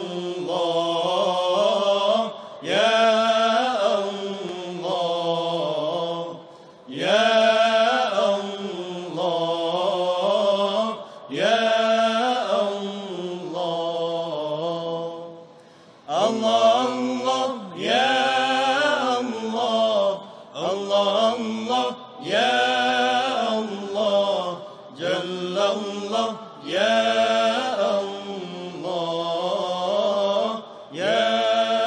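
A solo voice chanting in long, sliding melodic phrases, with short breaks between phrases.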